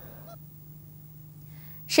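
Quiet lull with a faint steady low hum, then a woman's voice starts right at the end.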